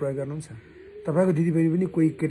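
A man talking, with a bird's low coo, of the kind a pigeon or dove makes, in the short pause about half a second in.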